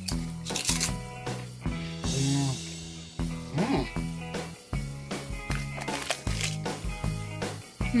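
Background music playing, over which kettle-cooked potato chips crunch in the mouth as two people chew, in a string of short crisp cracks.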